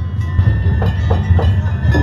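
Danjiri-bayashi festival music: drums with clanging hand gongs, over a heavy low rumble, and a few short shouts about a second in.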